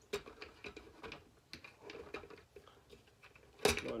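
Small scattered clicks and taps of plastic skimmer parts being handled and fitted together on the pump base.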